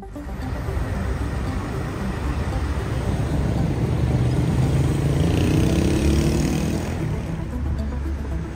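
City street traffic: cars and passenger vans driving past with their engines running, and one engine rising in pitch about five seconds in as it pulls away.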